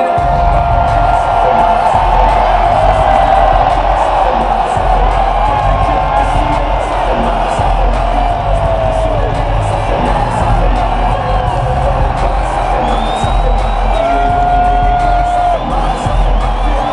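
Loud music over an arena's PA system with a pulsing bass beat, mixed with a large crowd cheering and whooping, heard from among the crowd.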